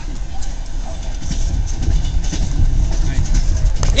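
Passenger train running on the rails, a steady low rumble heard from inside the carriage that grows somewhat louder, with faint voices in the background.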